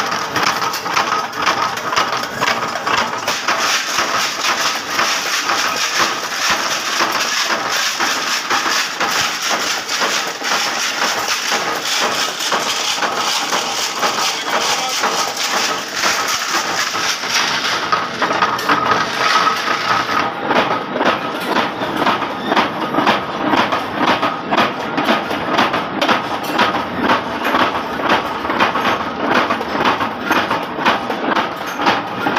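Steel hex nuts tumbling inside a rotating riveted steel drum: a loud, continuous metallic clatter of many small impacts, becoming more regular and pulsing about two-thirds of the way through.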